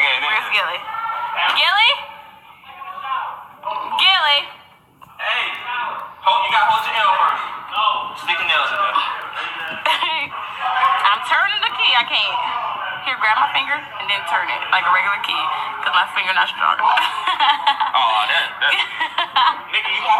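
Speech only: several people talking over one another, with a brief lull about four to five seconds in.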